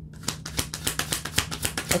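A deck of tarot cards being shuffled by hand: a quick, even run of soft card clicks, about eight to ten a second.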